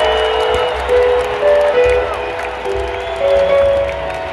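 Live rock band playing a slow blues through arena loudspeakers, a lead instrument holding long melody notes that step up and down between sung lines. A crowd's noise runs underneath.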